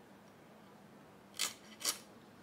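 Two short rasping scrapes about half a second apart, near the end, from young hilsa (jatka) being cut and handled on a steel plate.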